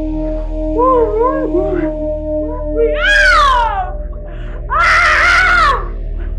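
A woman's wavering, muffled cries, then a long scream falling in pitch about three seconds in and a loud, high, held scream near the end, over a steady sustained drone of film score music.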